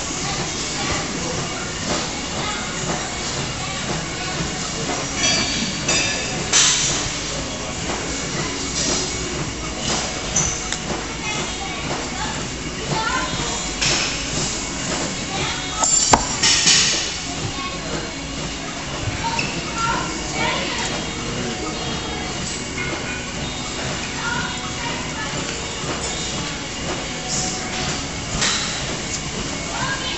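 Gym background of music and people talking over a steady rumble, with a few brief louder knocks or rustles, about six, fourteen and sixteen seconds in, as a duffel bag loaded with weights is handled and hoisted.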